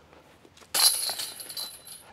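Disc golf basket chains jangling as a putted disc strikes them and drops into the basket; the metallic rattle starts suddenly about three-quarters of a second in and rings out over about a second.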